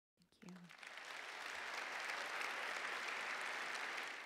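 Audience applauding. The clapping swells over the first second, then holds steady.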